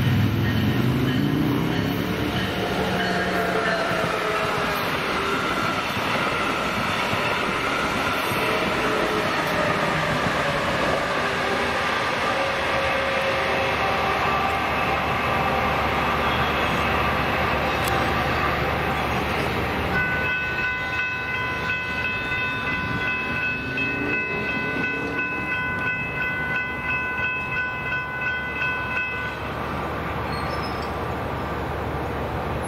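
Brightline passenger train running past on the rails, a loud steady rumble with a falling pitch in the first few seconds. For about nine seconds near the end a steady high-pitched warning tone sounds over the rumble.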